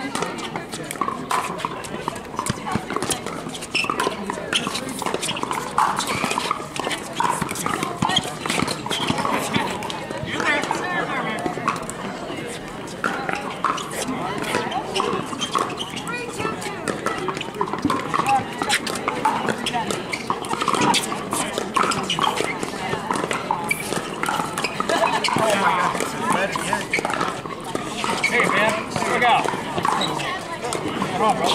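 Pickleball paddles popping against hard plastic balls in rallies on several courts at once, sharp pops coming irregularly throughout, over a steady hubbub of players and onlookers talking.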